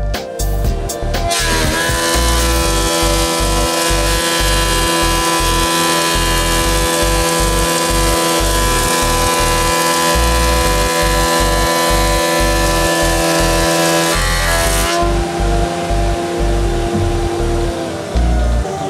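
Felder jointer-planer with a standard four-knife cutterblock planing a board: a loud, steady machine whine under the rush of the cut. The cutting noise drops away about fifteen seconds in, leaving the cutterblock spinning freely.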